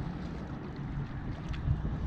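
Wind buffeting the microphone, a steady low rumble, with a faint click about three-quarters of the way through.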